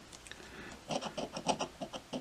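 A coin scratching the coating off a scratch-off lottery ticket in a run of short, quick strokes, starting about a second in.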